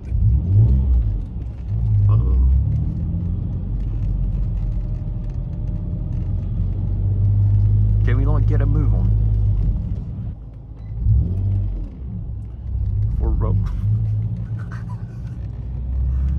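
Ford Mondeo ST220's 3.0 V6 with a Milltek exhaust, heard from inside the cabin as a low engine rumble while the car drives and accelerates through city traffic. The rumble swells and dips a couple of times, as with gear changes.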